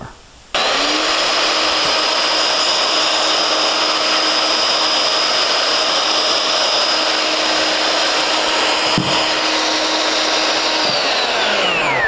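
Festool OF 2200 plunge router starting about half a second in, running steadily through a test cut in a foam-core fiberglass door plug, then switched off near the end and winding down with a falling whine. A single knock is heard shortly before it stops.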